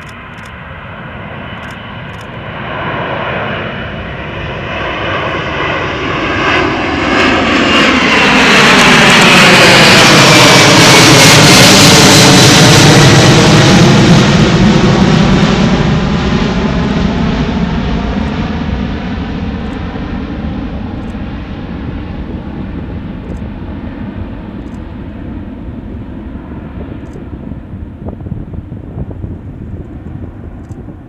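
Boeing 747-400 airliner's four General Electric CF6-80C2 turbofans at takeoff climb power as the jet passes overhead. The engine noise builds to its loudest about ten seconds in, with a high fan whine that drops in pitch as the aircraft goes by. The rumble then fades slowly as it climbs away.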